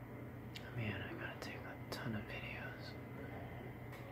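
A soft whispered voice with a few sharp clicks, over a steady low hum.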